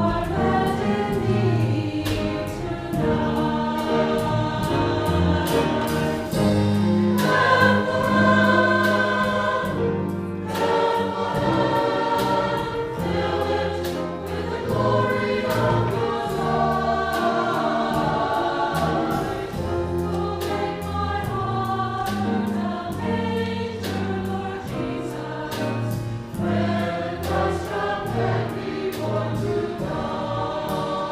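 Mixed church choir singing with instrumental accompaniment: held bass notes under the voices and a steady beat running through.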